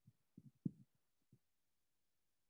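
Near silence with a handful of soft, low thumps in the first second and a half, the loudest a little before one second in.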